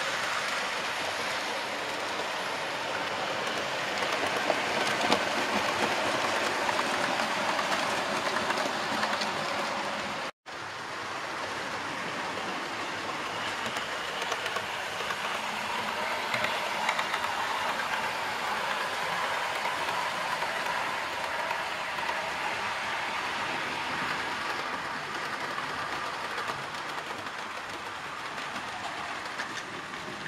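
Model trains running on a layout's track: a steady rolling rumble of wheels on the rails with light clicks, broken by a brief gap about ten seconds in.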